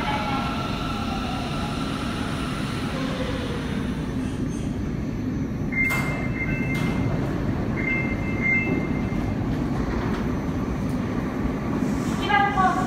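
Rubber-tyred Sapporo subway train (Namboku Line) running slowly into the platform and coming to a stop, with a steady low rumble. Partway through, a high two-note tone sounds twice, about two seconds apart, with a couple of sharp clicks.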